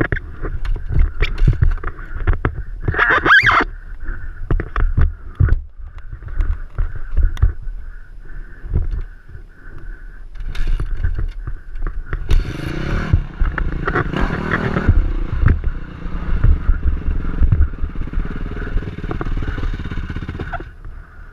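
Dirt bike engine running, rising and falling in pitch over uneven riding, with a dense low rumble and many short knocks.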